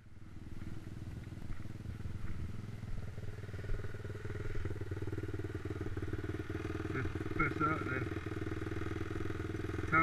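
Stomp pit bike's single-cylinder four-stroke engine idling steadily.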